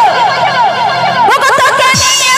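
Band music with a rapidly repeated falling electronic tone, about six swoops a second, ending in a quick upward sweep near the end.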